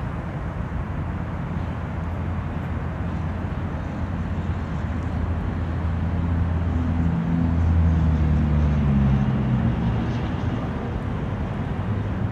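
A low engine drone of a passing motor. It grows louder to a peak a little past halfway, its pitch dipping slightly, then fades.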